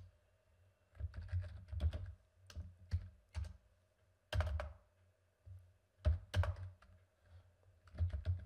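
Typing on a computer keyboard: quick runs of keystrokes, each a sharp click with a dull thud, in short bursts with pauses between.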